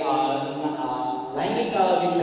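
Only speech: a man talking in Telugu into a handheld microphone over the hall's sound system, interpreting the English talk.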